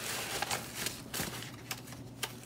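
Faint rustling of a plastic sleeve with a few soft clicks and taps as a small boxed item is handled.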